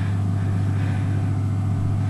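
A steady low hum with no change in level.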